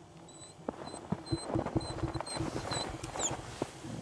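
A small ice-fishing reel being wound by hand, giving a run of quick irregular clicks with short high squeaks, as a fish is reeled up through the ice hole.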